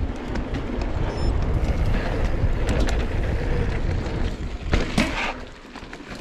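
Mountain bike riding down a dirt forest trail, heard from an action camera on the bike or rider: a steady low rumble of wind on the microphone and tyres on dirt, with rattling clicks from the bike over roots. A few sharper knocks come about five seconds in.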